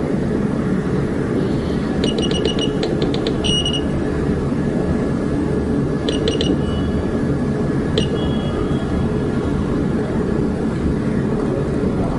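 Short electronic key beeps from a Honda HS-2000 ultrasound machine's console: a quick run of about eight beeps two to three and a half seconds in, three more around six seconds, and a single beep with a longer tone near eight seconds. Under them runs a steady low hum.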